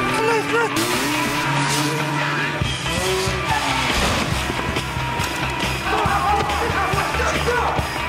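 A film soundtrack of music mixed with car sound effects and voices. A heavy low beat comes in about two and a half seconds in.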